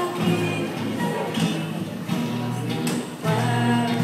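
A guitar ensemble of acoustic guitars playing chords behind two girls singing into microphones, the voices holding sustained notes.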